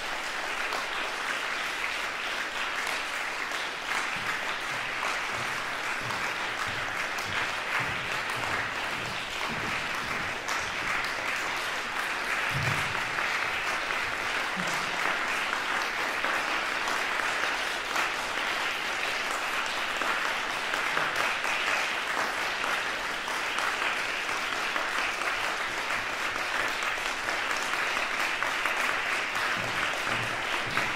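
Concert-hall audience applauding steadily, swelling a little partway through.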